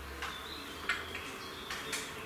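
A few faint clicks and soft puffing as a man draws on a tobacco pipe to keep the flake lit, over quiet room noise.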